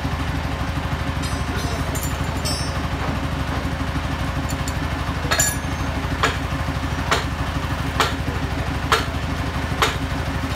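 An engine idling steadily with an even low pulsing. From about halfway in, sharp knocks come roughly once a second.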